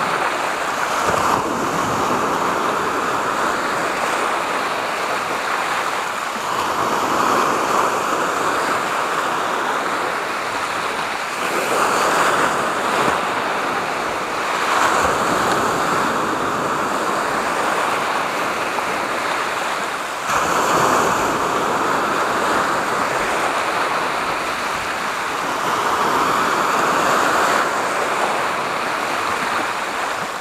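Sea waves breaking and washing over shoreline rocks, a continuous surf that swells every few seconds as each wave comes in.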